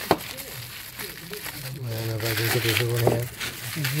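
Plastic bubble wrap crinkling and rustling as it is handled and unwrapped by hand, with a sharp click just after the start.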